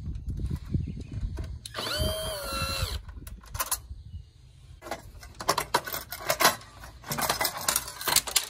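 Cordless drill-driver backing out a screw from the printer's frame. Its motor whines for about a second, about two seconds in, rising as it spins up and falling as it stops. This is followed by irregular clicks and rattles of the screw and plastic printer parts being handled.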